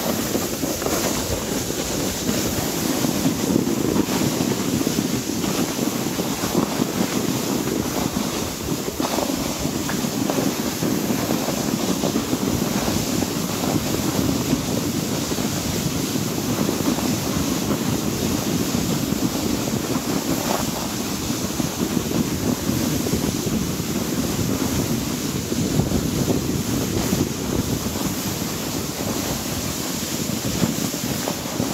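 Wind buffeting the microphone: a steady, rough rushing noise with no pauses.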